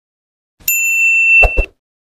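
Notification-bell "ding" sound effect from a subscribe-button animation: one bright ringing tone starting about half a second in, held steady for about a second, then cut off. Two short low thumps come near its end.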